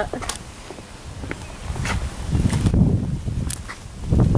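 Uneven low rumble of outdoor microphone noise, swelling for a moment past the middle, with a few light clicks.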